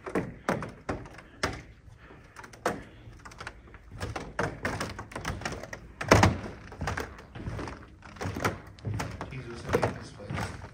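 Irregular thunks and knocks, about two a second at first, the loudest about six seconds in, with low talking between them.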